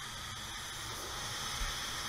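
Paint spray gun with a 1.4 tip atomizing clear coat at low pressure, about 22–23 psi: a steady hiss of air.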